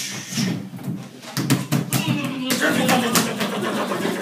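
Wordless voices in a small room, with a quick run of sharp knocks about midway through.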